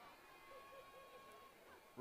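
Near silence, with faint background hiss and a faint steady tone in the middle.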